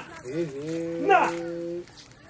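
A long, low call held on one steady pitch for about a second, then cut off. A brief falling cry sounds over it partway through.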